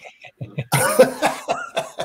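A man laughing hard in several breathy, rough bursts, starting under a second in.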